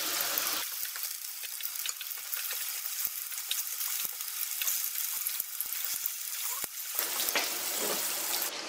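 Chicken meatballs frying in a little vegetable oil in a frying pan: a steady sizzle with many small crackles, as they are turned over with a fork.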